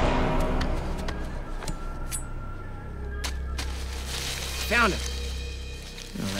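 Background score music: a swell fading away at the start, then a low sustained drone with a few faint ticks, and a short rising-and-falling tone about five seconds in.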